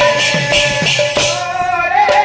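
Sambalpuri kirtan music: fast, even jingling hand percussion, about four strokes a second, over a drum and a melodic line. Past the middle, the percussion drops out for about half a second under a single held note, then comes back.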